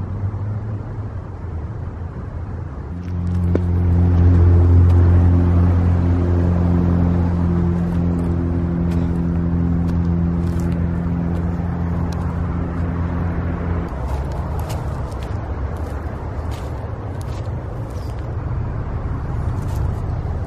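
Road traffic rumbling, with a heavy vehicle's engine droning at a steady pitch that comes in about three seconds in, is loudest soon after, and fades out around fourteen seconds. Footsteps crackle on dry leaves and twigs, more often in the second half.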